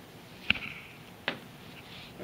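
Two sharp knocks in a quiet room, about three-quarters of a second apart; the first is louder and rings briefly.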